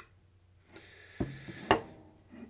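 Hard 3D-printed plastic parts being handled and set on a desk: a brief scraping slide, then a dull knock and a sharper, louder knock shortly before the end.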